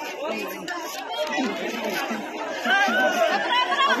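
Several people talking at once: overlapping background chatter with no single clear voice.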